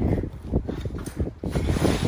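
Footsteps of honor guard members stepping off on a hard floor, with irregular mechanical clicks and rattles from around the wheeled casket cart.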